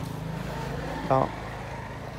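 A motor vehicle engine running steadily as a low, even hum that eases a little about a second in.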